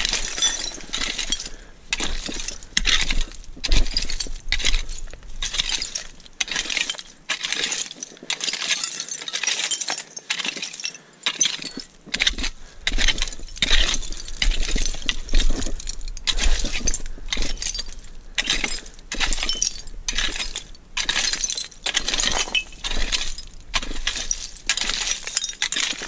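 Hand digging tool striking and scraping into dump soil full of broken glass and pottery shards: repeated clinking and crunching strikes, about one or two a second.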